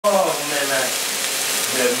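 Hamburger patties sizzling in hot oil in a frying pan: a steady hiss under a person talking.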